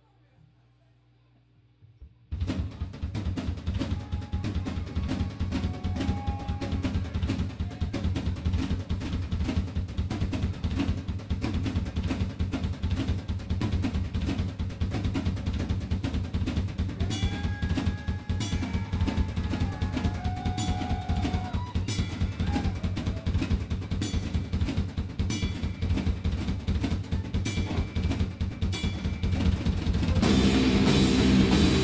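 Rock drum kit played on its own at the start of a heavy metal song: a fast, dense pattern of bass drum and snare that starts abruptly about two seconds in. Cymbal strikes join in the second half, with a few faint held tones behind the drums.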